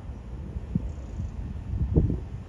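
Wind buffeting the microphone outdoors: a low, uneven rumble that surges irregularly.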